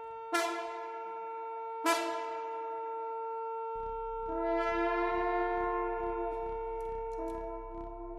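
Electric trombone played through effects pedals. One note is held under the whole passage, two sharply attacked notes sound early, and a longer swelling note comes in about four seconds in over a low rhythmic pulse.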